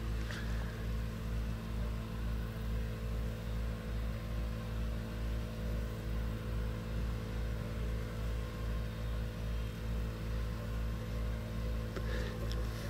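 A rack railway train running steadily: a constant low mechanical hum with a regular throb about twice a second.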